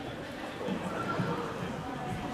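Indistinct voices of players and spectators echoing in a large sports hall, over the hall's steady background murmur.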